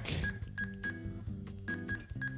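Short keypad beeps from a TidRadio TD-H8 handheld radio as a frequency is keyed in: three quick beeps, a pause, then two more near the end. Background music plays underneath.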